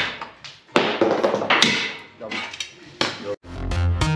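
Metal clattering and scraping from hand tools working on the underside of a car on a lift, in loud noisy bursts over the first couple of seconds. Electronic music starts abruptly near the end.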